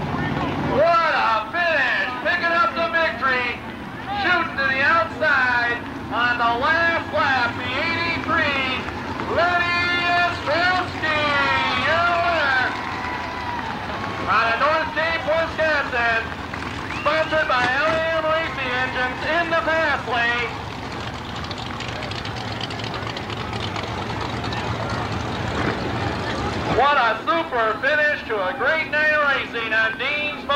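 Loud, excited voice calling out in bursts over a steady drone of dirt-track modified race car engines. About two-thirds of the way through the voice stops for several seconds, leaving only the engine drone, and it returns near the end.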